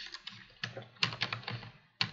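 Computer keyboard being typed on: a quick, irregular run of about a dozen keystrokes as a line of code is entered.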